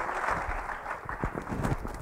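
Audience applause: scattered, irregular hand claps.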